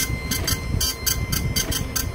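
Dot-matrix impact printer's print head striking pins through gold foil onto black sheet as it moves across the line, giving a rapid pulsing clatter of about four to five pulses a second over a low rumble.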